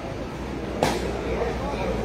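A sepak takraw ball struck once by a player's foot, a single sharp smack about a second in, over steady spectator chatter.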